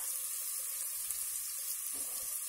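Chopped onions sizzling in hot oil in a pot, a steady, even hiss.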